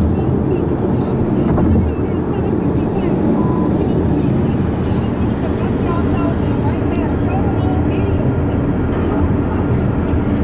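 Loud, steady road and engine rumble of a car travelling at highway speed, with indistinct voices underneath.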